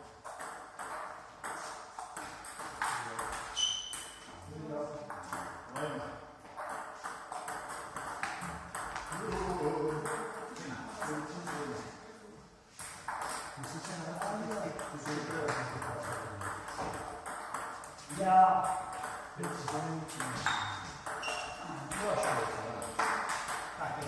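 Table tennis rallies: the ball clicking back and forth off the paddles and the table in a quick, uneven rhythm, with play from more than one table.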